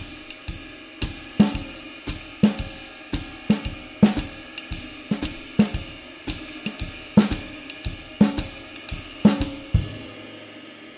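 Jazz drum kit playing a swing time feel: steady ride cymbal and hi-hat, with the snare drum struck on the 'and' of beat four in each bar as a comping accent instead of a backbeat on two and four. The playing stops at the very end.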